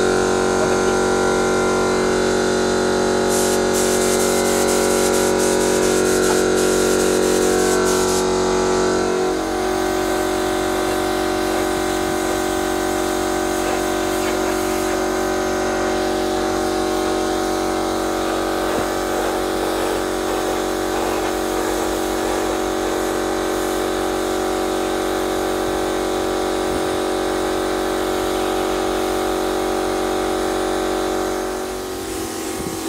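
Small electric air compressor running steadily, with the hiss of a paint spray gun over it. About nine seconds in, the hum changes pitch suddenly and then holds steady.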